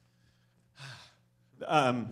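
A man's breath and sigh through a handheld microphone: a short noisy breath, then near the end a loud voiced sigh falling in pitch.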